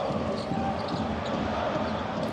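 Steady crowd noise from a packed basketball arena, with a basketball being dribbled on the hardwood court.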